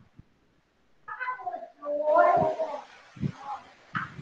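A domestic cat meowing twice: a short call about a second in, then a longer one.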